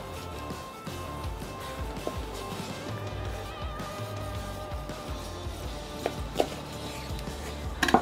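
Background music with held tones and a pulsing bass. A few faint taps of a knife meeting a wooden cutting board as meat is sliced.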